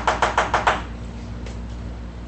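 Felt-tip marker tapping against a whiteboard: a quick run of about six sharp taps in under a second, near the start.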